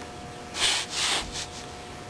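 Two short, hissy rushes of breath close to the microphone, one right after the other about a second in, over a faint steady hum.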